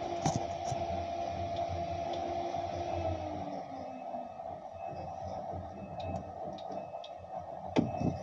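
Electric warehouse lift truck humming steadily, with one tone sliding down in pitch over the first four seconds.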